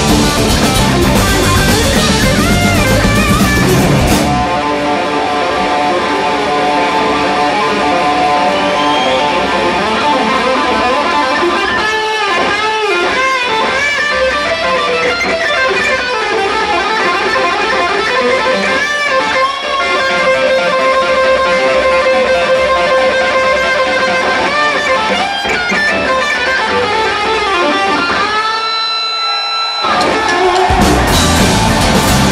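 A live electric guitar solo: the band drops out about four seconds in, leaving the lead guitar alone. It plays sustained notes with string bends and vibrato.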